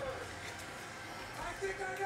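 A faint voice in the background over low room noise.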